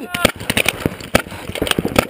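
Paintball markers firing in rapid, irregular pops, several shots a second, during a game. A shout trails off right at the start.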